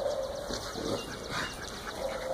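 Faint sounds of dogs moving about close by, with no barking.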